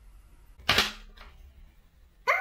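A metal tin's lid pulled off with one sharp snap about half a second in, followed by a fainter click a little after a second.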